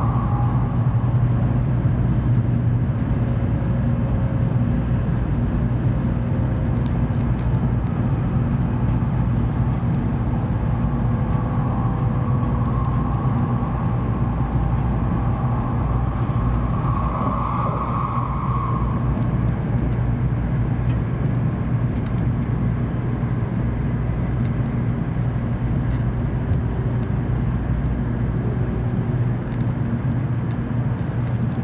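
Steady low rumble of a JR Central N700A Shinkansen train running at speed, heard inside the passenger cabin. A faint whine comes and goes above it and swells briefly a little past halfway.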